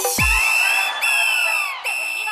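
Hindi roadshow DJ dance remix at a breakdown: the heavy bass beat cuts out at the start, leaving held high whistle-like synth tones with slow rising and falling sweeps over a noisy wash.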